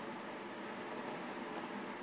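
Steady low background hiss of room tone in an indoor work space, with no distinct sound events.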